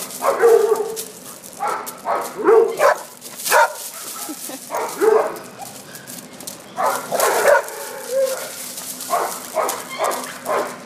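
Dogs play-fighting, barking and yipping in repeated short bursts at irregular intervals.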